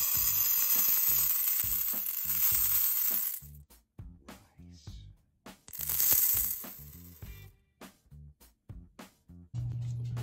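Dry uncooked rice poured into a metal pot: a steady rushing hiss of grains for about three and a half seconds, then a second, shorter pour about six seconds in.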